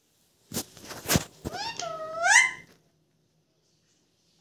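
A few sharp taps in the first second and a half, then a pet parakeet giving a short run of rising squawky chirps, the last one the loudest.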